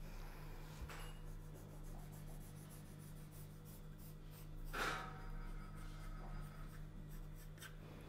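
Pencil scratching faintly on pattern paper as a line is drawn, with a brief louder scrape about five seconds in, over a steady low hum.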